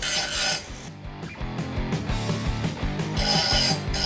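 Electric angle grinder cutting through metal plate with its cutting disc: a harsh, high grinding screech, the kind that sets teeth on edge. It is strongest at the start and again near the end, and falls away for a couple of seconds in the middle.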